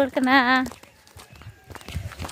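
A loud voice-like call with a strong, fast tremble in its pitch, held on one note, that stops about two-thirds of a second in. It is followed by soft scattered taps and scuffs.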